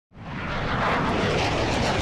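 Jet aircraft engines running on a flight line, a steady rushing noise with a low hum underneath, fading in from silence over the first half second.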